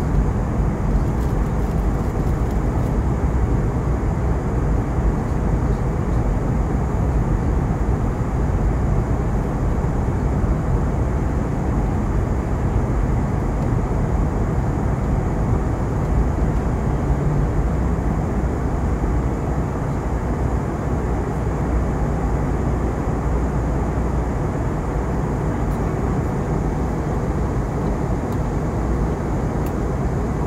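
Steady cabin noise inside an Airbus A320 airliner in descent: an even, low rush of airflow and jet engine noise, without changes.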